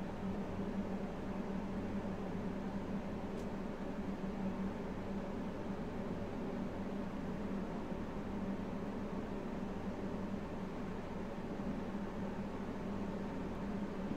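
Steady room noise: an even hiss with a low, constant hum, and one faint tick about three and a half seconds in.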